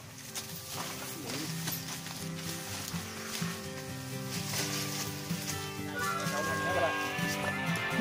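Background music with long held notes; a higher melody line comes in about six seconds in.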